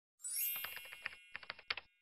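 Edited intro sound effect: a bright sparkling chime, then two quick runs of typing-like clicks at about ten a second.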